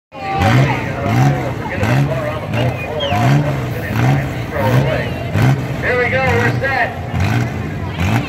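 Engines of a line of battered cars and pickup trucks on a dirt track, running and being revved over and over, rising and falling about one and a half times a second. A voice is heard over them.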